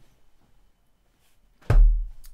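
A single heavy thump with a deep boom near the end, from a hand banging down on a desk.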